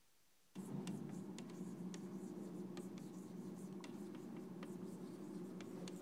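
Chalk writing on a blackboard: a continuous scratching with frequent sharp taps as strokes start and end, beginning about half a second in.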